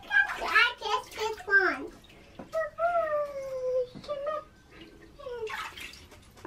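A small child's wordless voice sounds, including one long falling note, with bathwater sloshing in a bathtub; a short splash about five and a half seconds in.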